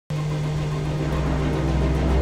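A motorcycle engine running at a steady pitch, mixed with film score music; a deep low rumble swells about a second in.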